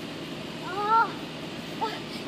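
One short, high-pitched call from a voice in the distance about a second in, rising then falling in pitch; no balloon splash or other impact is heard.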